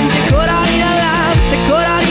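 Rock band playing live: electric guitars, bass guitar and drum kit in an instrumental passage, with a lead line of bending, sliding notes over the full band.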